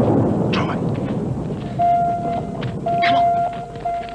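The rumbling tail of a sci-fi explosion sound effect fades over the first second, then a steady high electronic tone sounds, broken by short gaps, from about two seconds in.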